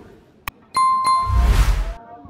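Subscribe-button animation sound effect: a sharp click about half a second in, then a second click with a bell-like ding that rings briefly, followed by a loud whoosh with a low rumble.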